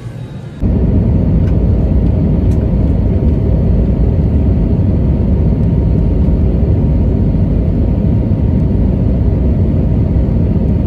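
Jet airliner cabin noise in flight: a loud, steady rumble of engines and airflow heard from a window seat near the wing, starting suddenly about half a second in.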